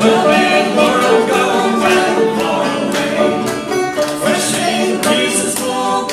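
Banjo and acoustic guitar playing a folk song together in a steady, even rhythm, with singing voices over them.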